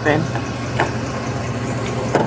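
A vehicle engine idling, a steady low hum.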